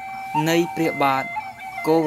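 A man's voice reciting verses in Khmer in a measured, sing-song delivery, over soft background music with long held tones.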